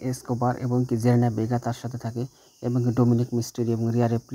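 A man's voice talking in steady narration, with a short pause a little after two seconds in.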